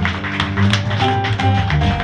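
Lap-style slide guitar, a dobro-type played flat with a steel bar and picks: a run of picked notes ringing over low bass notes in an instrumental passage of a country song.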